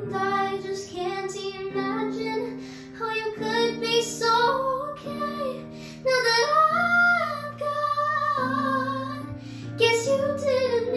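A young girl's solo voice singing long held, wavering notes over a backing track of sustained chords.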